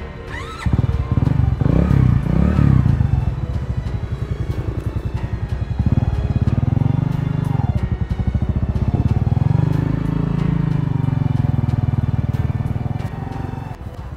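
Motorcycle engine starting up about a second in, revving up and down as the bike pulls away, fading near the end.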